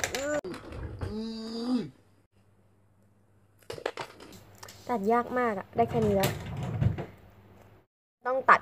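A girl's voice: a drawn-out strained vocal sound about a second in, then talk and squealed exclamations of effort as she struggles to cut a foam squishy toy with small scissors, with a few faint clicks between.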